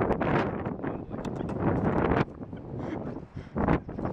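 Wind buffeting the camera microphone in gusts, with handling rustle; it drops off sharply a little over two seconds in.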